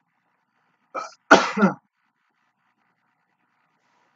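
A person sneezing once: a short in-breath about a second in, then one loud sneeze.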